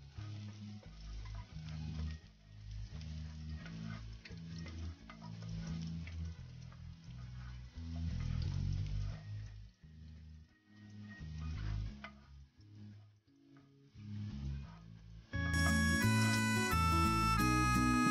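Chopped garlic frying in oil in a pot, a faint sizzle with a wooden spoon scraping and tapping against the pan as it is stirred. About fifteen seconds in, louder background guitar music comes in.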